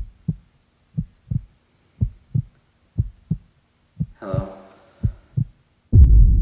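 Heartbeat sound effect: paired low thumps, about one pair a second. About four seconds in, a short pitched sound falls in pitch, and a loud deep rumble starts at the very end.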